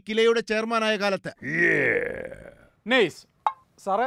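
A man's speech, broken about a second and a half in by a loud rasping sound, over a second long, falling in pitch, before the speech resumes briefly. A single click comes near the end.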